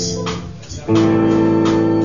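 Live rock band playing, with electric guitar, bass guitar and drums. The sound thins out briefly about half a second in, then the full band comes back in on a loud, sustained chord just before a second in.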